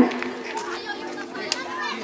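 Crowd of spectators and children chattering, with a faint steady hum underneath and a single sharp click about halfway through.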